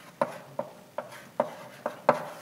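Chalk writing on a blackboard: five sharp taps about 0.4 s apart, each with a short scrape as a stroke is drawn.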